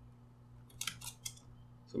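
A quick run of about five computer keyboard keystrokes, about a second in, typing a pair of quotation marks.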